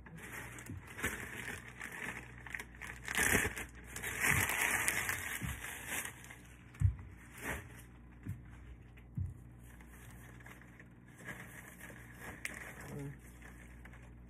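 Pink crinkle gift-basket shred being pulled apart and dropped into a gift box, crinkling and rustling, densest between about three and six seconds in. A few short sharp taps follow, the loudest about seven seconds in.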